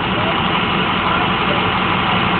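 Bus hydraulic leveling-jack pump running steadily, spun up again to build pressure. The pump keeps cycling on with the jacks stowed and the parking brake off, the fault the owner is trying to cure.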